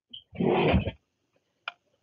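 A woman's short wordless vocal sound, lasting under a second, then a single mouth click just before she starts speaking.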